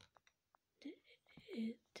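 A person speaking softly, close up, in the second half, after a few faint clicks near the start.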